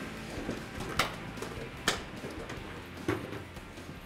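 A room full of football players in pads shuffling as they join hands, with a low rustle and a few sharp clacks of gear about a second apart.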